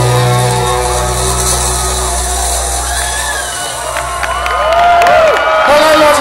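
Live rock band's final chord held and ringing out over a low bass drone, fading after about four seconds. The festival crowd then cheers, with whoops and a few claps.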